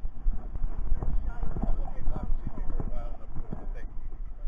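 Irregular thumps and rubbing from a camera harnessed to a dog as it moves, its steps jolting the microphone.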